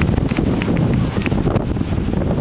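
Wind buffeting the camera microphone as a steady low rumble, with faint scattered ticks above it.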